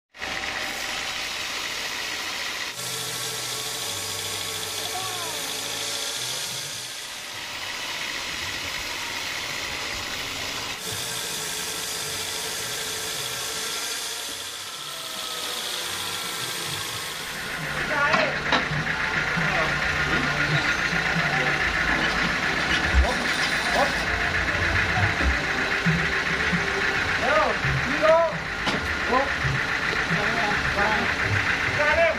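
Sawmill band saw running and cutting through a log, with two passes of higher cutting noise in the first half. From about halfway it gets louder and busier, with short higher sounds over the machine noise.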